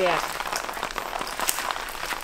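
Small scissors snipping leafy plant stems, with the leaves rustling: a run of small irregular clicks and crackles.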